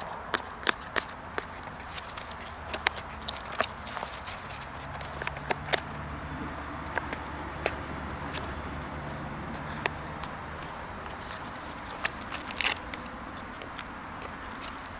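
Scattered sharp clicks and crinkles of MRE food pouches being handled, some a few a second, some seconds apart, over a faint low steady hum that fades out about ten seconds in.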